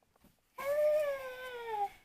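A toddler's single drawn-out vocal sound, a bit over a second long, its pitch slowly sinking toward the end.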